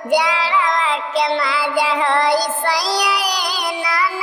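A high, pitched-up voice singing a Bhojpuri jhumar folk song over music, the melody sliding up and down in short phrases.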